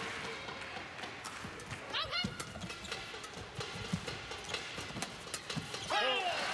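Badminton rally: a shuttlecock struck back and forth by rackets, with sharp hits coming at uneven intervals over the steady noise of an indoor crowd. A shoe squeaks on the court about two seconds in.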